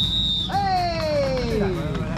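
A short, steady, high whistle blast starts the race, followed by one long call that falls steadily in pitch, over background music.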